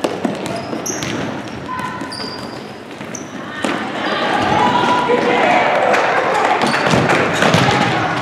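Futsal being played indoors on a wooden gym floor: ball kicks and bounces, short sneaker squeaks, and players and spectators shouting in an echoing gym. The voices swell and stay loud from about halfway through.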